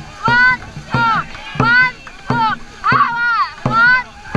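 Dragon boat crew racing at full stroke rate: a rhythmic shout about every two-thirds of a second, one on each paddle stroke, each call starting with a sharp beat from the bow drum, over paddle splashes and rushing water.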